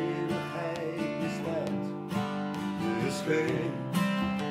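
Two acoustic guitars playing chords together, the notes ringing on steadily.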